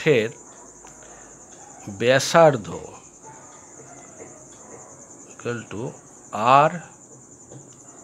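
A steady, high-pitched insect trill runs throughout. A voice speaks a few short words about two seconds in and again around five to seven seconds.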